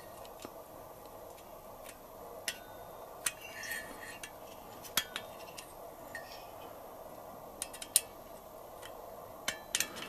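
Light metallic clicks and taps as a thin metal head gasket and its dowels are handled against an aluminium scooter cylinder head: a dozen or so scattered sharp ticks, one with a brief ring about three and a half seconds in, over faint workshop room tone.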